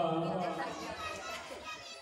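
A man's narrating voice trailing off in the first half second, then a background of children's voices and crowd chatter.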